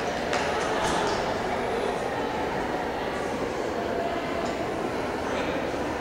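Steady rumbling background noise of a large indoor arena, with faint, indistinct voices in it.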